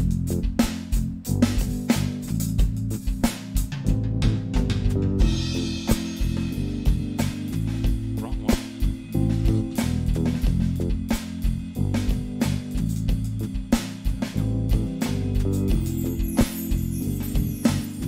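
Band music from a live jam: a Roland TD-25KV electronic drum kit keeps a steady beat under a keyboard's bass line and parts, with a brighter cymbal-like wash about five seconds in.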